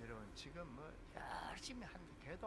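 A man's voice speaking very softly, close to a whisper, with a brief breathy hiss a little past a second in.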